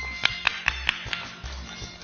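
A few scattered hand claps, about five in the first second, over light background music.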